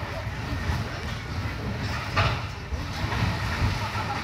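Low, steady rumble of a slow-moving train heard from on board, with a single sharp clank about two seconds in.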